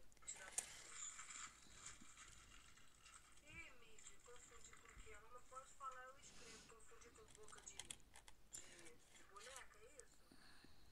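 Near silence: faint rustling and light clicks as fingers work a piece of cold-porcelain clay close to a clip-on headset microphone, with a few sharper ticks near the end and a faint voice in the background a few seconds in.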